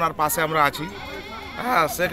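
A man speaking in short phrases, with a brief pause in the middle.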